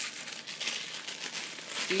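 Plastic wrapping of frozen pancakes crinkling as it is handled, a continuous run of small crackles.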